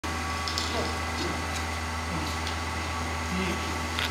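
Steady low mechanical hum, like a fan or motor running, with faint voices in the background and a few light clicks.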